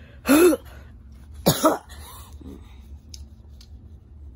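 A puppeteer's voice laughing in short bursts, a couple of loud syllables in the first two seconds and a fainter one after, then only a low steady hum.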